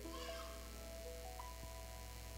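Soft, sustained keyboard pad chords playing faintly, the held notes shifting pitch every second or so, with a short high rising sound near the start.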